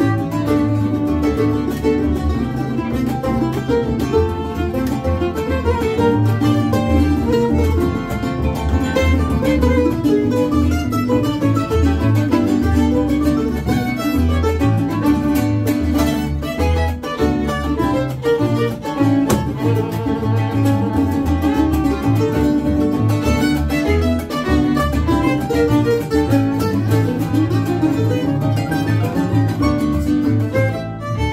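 Acoustic string band playing a Venezuelan joropo: bowed fiddle over a Venezuelan cuatro, mandolin and upright bass, with a steady pulsing bass line underneath.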